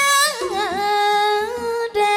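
Woman singing with a Burmese hsaing waing ensemble. She holds long notes, with a quick wavering ornamental turn about half a second in.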